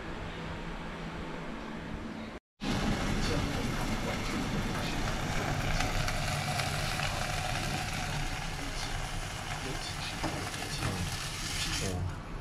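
A steady background hum runs for the first couple of seconds and then cuts out briefly. After that comes a slice of ham frying in a pan on a gas stove: steady sizzling over the burner's hiss, with a few light spatula clicks near the end.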